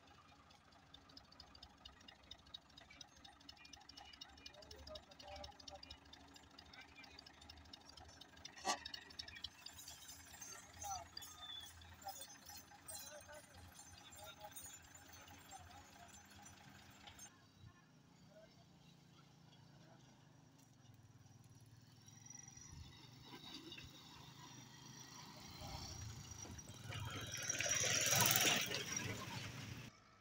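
Faint men's voices talking, over a low steady engine hum from the tractors. A single sharp click comes about nine seconds in. Near the end a louder rushing noise swells and cuts off abruptly.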